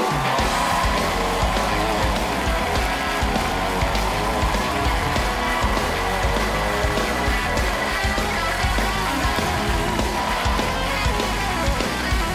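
Talk-show house band playing a guest's walk-on music, with studio audience applause and cheering mixed in throughout.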